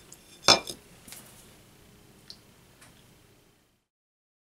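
A single sharp clink about half a second in, as a small hard object is set down on the worktable, followed by a few light taps. The sound then cuts off to dead silence.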